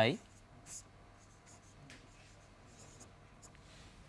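Marker pen writing on a whiteboard: a run of short, faint strokes as a formula is written out.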